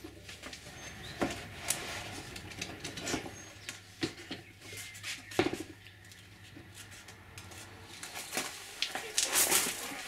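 Scattered clicks and knocks of plastic spring clamps and a wooden board being handled as the glued foam layers of a seat pad are clamped under pressure, with a brief rustle near the end.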